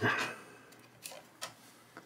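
A few short plastic clicks and taps as a trading card in a clear hard plastic case is handled: two clear clicks about a second in and half a second apart, and a fainter one near the end.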